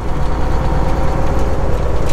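Semi truck's diesel engine running steadily while the truck drives, a constant low rumble with road noise, heard from inside the cab.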